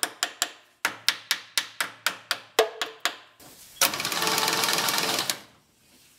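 Quick metallic taps, about four to five a second, as the dead starter of a Saab Sonett III is struck from underneath to free it. After a short pause the starter motor spins and cranks the V4 engine for about a second and a half, then winds down.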